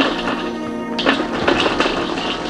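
Background music over a run of quick light taps as popped corn drops into a stainless steel bowl. The taps crowd together from about halfway through.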